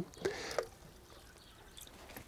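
Plastic watering can being dipped into a rain barrel to fill, with a brief slosh and pour of water in the first half-second.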